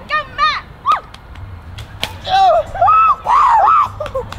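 Young voices crying out in high shrieks that rise and fall, short ones in the first second and three loud ones in the second half, with a sharp snap about two seconds in as a water balloon bursts.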